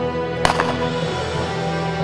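Background music throughout, with one sharp shotgun report cutting through it about half a second in.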